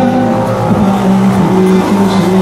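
A man singing with acoustic guitar accompaniment, holding long notes that slide from one pitch to the next.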